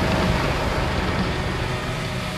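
A motor vehicle running with a steady rumble and hiss, slowly getting a little quieter, as a car rolls into a car wash.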